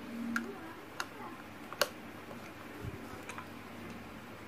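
A few sharp, irregular clicks and taps, the loudest a little under two seconds in, with a dull thump about three seconds in: small hard objects being handled.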